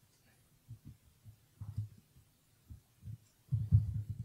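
Typing on a laptop keyboard: a string of short, dull, irregular thumps that come quicker and louder near the end.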